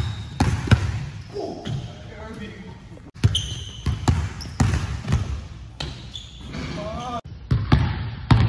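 Basketball dribbled on a hardwood court floor: a quick, uneven run of hard bounces as the player handles the ball against a defender.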